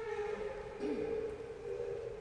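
A steady held tone with overtones, lasting about two seconds.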